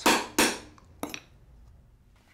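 Steel tool tip chipping at a cured lump of baking soda and superglue on a wooden board: two sharp clinks close together, then two lighter clicks about a second in. The hardened mix chips like glass.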